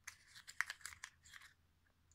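Faint crinkling and tearing of a small wrapper from a LOL Surprise egg being opened by hand, a quick run of soft crackles about half a second to a second in.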